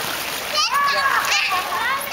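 Pool water splashing as a child moves through the shallows and hauls herself onto the edge, with a child's high voice calling out over it from about half a second in.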